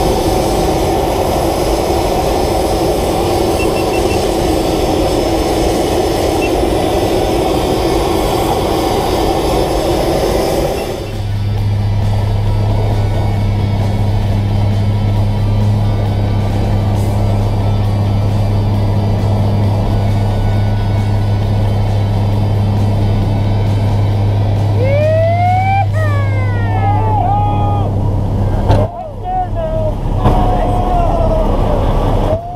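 A PAC 750XL's turboprop engine running. For the first eleven seconds it is a loud, dense rushing roar heard at the open cabin door. After a sudden change it becomes a steady low drone heard from inside the aircraft. Near the end, rising whoops from voices ride over the drone.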